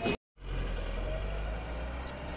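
A low, steady rumble of an idling vehicle engine, beginning right after a momentary drop to silence at the very start.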